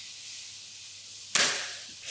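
A spring-powered Nerf toy blaster fired once: a single sharp pop a little over a second in that fades away over about half a second.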